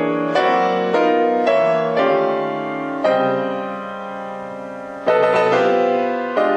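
Acoustic piano played live: chords struck in a quick run about half a second apart, then one held and left to ring and fade for about two seconds before two more chords near the end.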